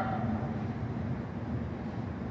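Steady low rumble and hum of urban background noise, even throughout, with no distinct events.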